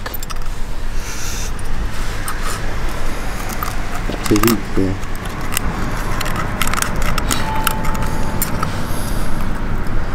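Metal long-nosed forceps clicking and rattling against the hook and lure in a pike's toothy mouth as the hook is worked free, in many short irregular clicks over a steady low background rumble.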